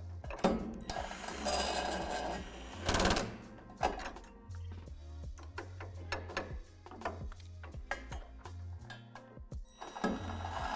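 Cordless power driver with a socket spinning jam nuts down a threaded steel U-bolt: one run of about two seconds, then two short bursts, with light clicks of hardware afterwards. Background music with a steady bass beat plays throughout.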